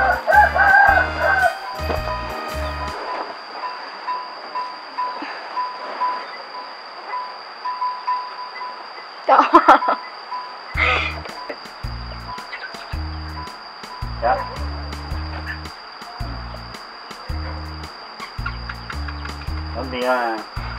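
Background music with a steady bass beat, which drops out for several seconds mid-way while a row of short beeps plays. A brief loud call comes about nine seconds in.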